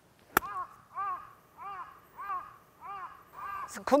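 A 58-degree wedge strikes a golf ball once, a sharp click about half a second in. It is followed by a crow cawing six times in an even series, about one caw every 0.6 s. A voice starts right at the end.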